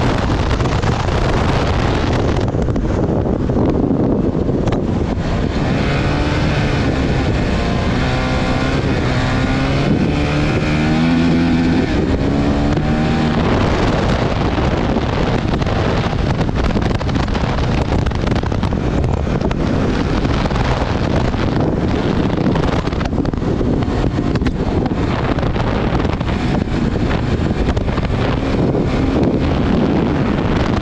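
Honda CRF450RL's single-cylinder four-stroke engine running hard at speed, buried in heavy wind noise on the microphone. Between about six and thirteen seconds in, the engine's pitch rises and falls in steps.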